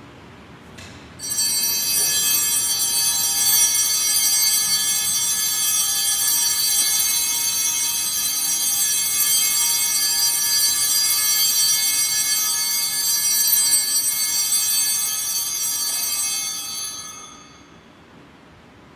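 Sanctus bells, a cluster of small altar bells, shaken without pause for about sixteen seconds: a bright jangle of many high ringing tones that starts about a second in and fades near the end. This is the ringing at the blessing with the Blessed Sacrament in Benediction.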